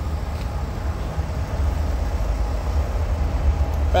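Low, steady rumble of a train going by, a little louder in the second half.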